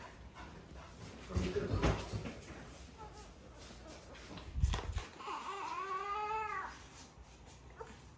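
A dog whining once, a pitched whimper that rises and then arches down, lasting about a second and a half a little past halfway. Before it come low knocks and bumps.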